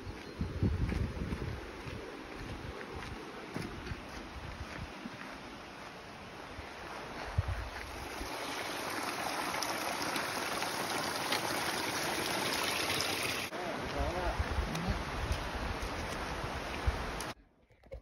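Rushing river water, a steady hiss that swells to its loudest in the middle, with low thumps on the microphone; the sound cuts off abruptly near the end.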